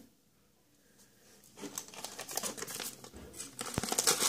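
Plastic packet of baking soda crinkling and rustling as it is picked up and handled, after about a second and a half of near silence; a light knock near the end.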